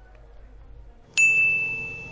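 A single bright electronic ding about a second in: one high clear tone that starts suddenly and fades slowly, over faint room noise.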